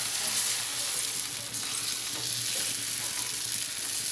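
Foxtail millet and green gram dosa batter sizzling on a hot griddle (tawa), a steady even hiss.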